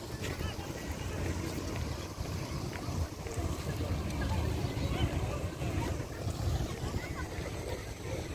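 Wind buffeting the microphone as a steady, uneven low rumble, with faint chatter of people mixed in.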